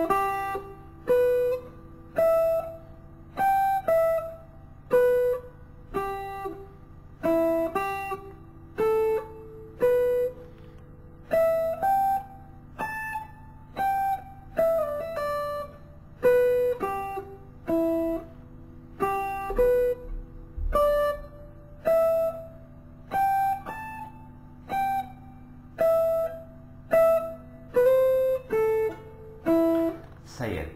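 Guitar playing a slow single-note Phrygian-mode line, one picked note roughly every second, each note ringing over a steady low sustained drone.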